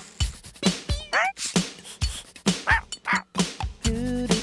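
Cartoon theme music with a steady percussive beat, a cartoon dog's warbling whimper about a second in, and two short yips near the end.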